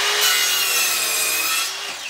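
Ryobi mitre saw cutting through an oak 1x2: the motor and blade give a steady whine with the rasp of the cut, and it stops just before the end.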